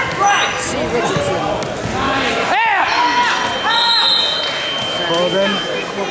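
Shouts of coaches and spectators ringing around a gymnasium, in short bursts, with thumps of the wrestlers on the mat.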